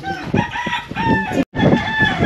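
Rooster crowing: long drawn-out calls held on a steady pitch. The sound cuts out abruptly for an instant about one and a half seconds in, and another crow follows.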